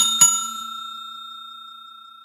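A bell-like ding struck twice in quick succession, its clear tone ringing on and fading away.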